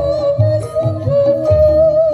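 Live Javanese gamelan music for a jaranan horse dance: a loud, high melody line wavers and bends without a break over repeated stepped chime notes and a steady low drum rhythm.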